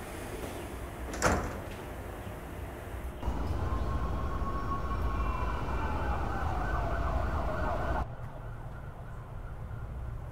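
A sharp knock about a second in. Then a few seconds of low city traffic rumble with a distant siren whose single long tone sinks slowly in pitch, cut off suddenly, leaving quiet room tone.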